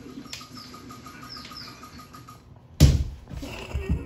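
A toddler moving about on a fabric sofa: faint shuffling with a few short high chirps, then a sudden loud thump and rustle about three seconds in, and a couple of softer knocks near the end.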